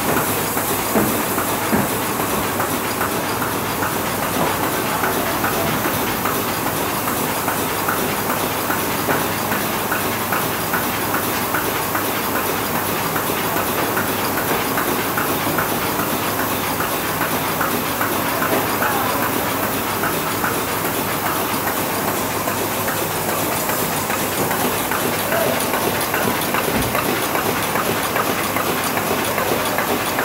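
Bobst Ambition folder-gluer running: a steady mechanical clatter of its belts and rollers, with fine repeated ticks over a constant hiss.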